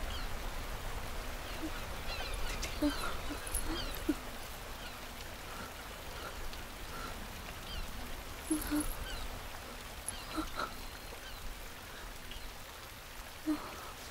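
Quiet outdoor nature ambience over a low steady rumble, with scattered short animal and bird calls.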